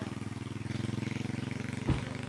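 An engine idling steadily nearby, with a single knock near the end.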